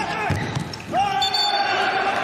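Handball players shouting in a sports hall with empty stands, with the ball thudding on the court. One long held shout starts about a second in.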